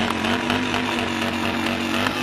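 Motorcycle engine running at a steady pitch.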